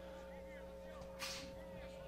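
Faint ballpark ambience with a steady hum and a few faint high chirps, and one short hiss a little over a second in.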